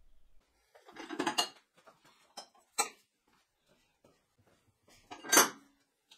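Steel round-tube frame of an adjustable weight bench clanking and rattling as its backrest is moved: a cluster of clanks about a second in, a sharp clink near three seconds, and the loudest clank a little after five seconds.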